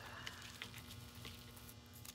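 Faint rustling and crackling of an artificial pine branch being pulled open by hand, over a low steady hum.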